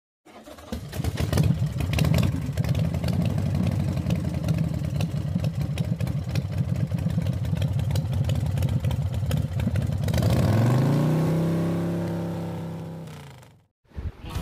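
A motor vehicle engine running with a rapid, rough pulse. About ten seconds in its pitch rises, then holds steady and fades away.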